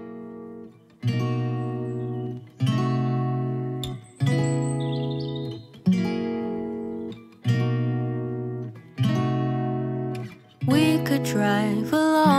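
Background music: acoustic guitar chords struck about every one and a half seconds, each left to ring out, with busier playing near the end.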